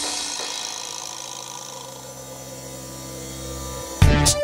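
Quiet breakdown in an instrumental electronic track: the drums drop out, leaving a held chord and low bass notes sustaining under a soft hiss. The sound fades down, then swells slightly toward the end.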